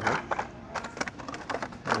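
Hands rummaging through Hot Wheels blister packs and cardboard card-game boxes: plastic and cardboard crinkling and clacking in a quick, irregular run of small clicks.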